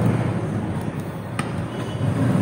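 Long-nose pliers working a jumper wire into the terminal of a plastic switch-and-outlet wiring device, giving one sharp click about one and a half seconds in, over a low steady hum.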